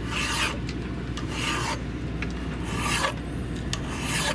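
Flat hand file rasping across a steel woodruff key seated in a windlass shaft, taking its height down because the key sits about half a millimetre too high. Three slow strokes about a second and a half apart.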